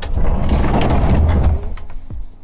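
Roll-off observatory roof rolling open along its rails, a loud low rumble that eases off about one and a half seconds in. The roof runs a little stiff.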